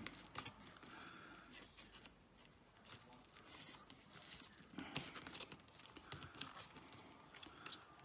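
Faint scattered clicks and rustles of fingers working inside an opened laptop, peeling back tape and freeing a thin internal cable. A few slightly sharper ticks come about half a second in and again around five and six seconds.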